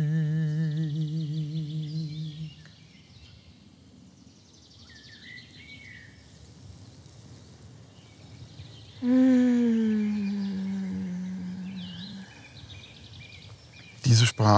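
A man humming long held notes. The first, with a wavering vibrato, fades out after a couple of seconds; about nine seconds in a second note comes in, slides slowly down and fades away. Faint bird chirps come in between.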